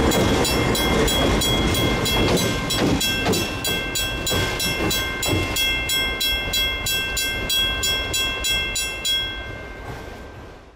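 Diesel locomotive passing close by and moving off, its low rumble fading. Over it a grade-crossing bell rings with rapid, even strikes and stops about nine seconds in.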